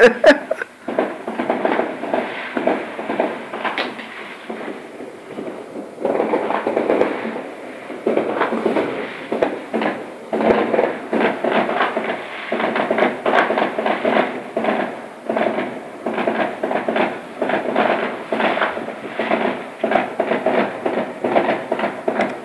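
Fireworks going off outside in a continuous rapid crackle of pops and bangs, sparser at first and dense from about six seconds in.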